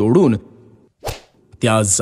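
A single quick cartoon whoosh sound effect about a second in, of the kind laid over an axe swing or a scene change.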